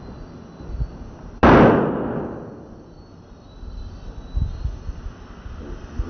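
A white latex balloon, blown up by mouth, bursts with one loud bang about a second and a half in. The bang fades over about a second.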